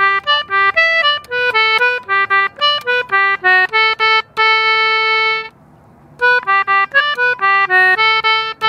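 English concertina playing a simple jig melody in G major one note at a time, in quick, separate notes: the answering phrase to the tune's opening call. The line ends on a long held note about five seconds in, and after a short pause a phrase starts again.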